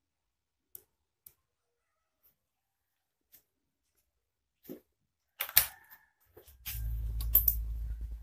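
A few faint clicks, then a burst of sharp clicks and rattling about five and a half seconds in, then a low rumble mixed with clicks for the last second or so, typical of handling noise.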